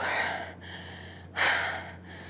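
A woman breathing hard through her mouth, two heavy breaths a little over a second apart: she is out of breath from an intense workout.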